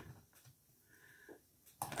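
Quiet room tone, with one faint, short high-pitched tone about a second in.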